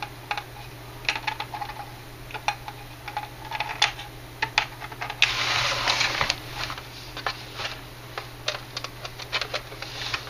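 Light, irregular clicks and taps of plastic model-kit parts and a glue applicator bottle being handled on a newspaper-covered bench, with a brief rustle about five seconds in.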